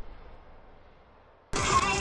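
The fading tail of an intro logo sound effect dies away almost to silence, then about one and a half seconds in it cuts suddenly to the noise inside a moving car's cabin.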